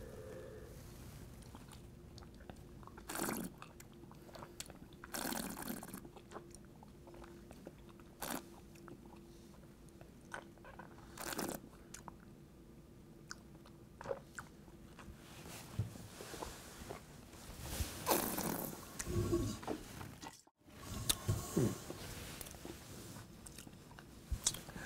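Mouth sounds of a person sipping and tasting red wine: a handful of short, noisy slurps with quiet pauses between them, clustered more closely near the end.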